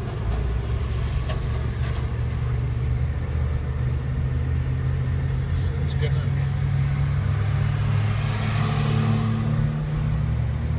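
Car engine and road noise heard from inside the cabin while driving in traffic: a steady low hum, with the engine note climbing a little in the last few seconds.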